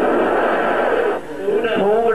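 A man blowing a long puff of breath straight into a close microphone, a breathy rush that lasts a little over a second, then speech.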